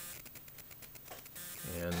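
Faint handling noise: rapid, irregular light clicking for about a second and a half, then a word of speech near the end.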